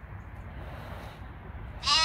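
A goat bleats once: a single loud, held call that starts just before the end, after a stretch of quiet background.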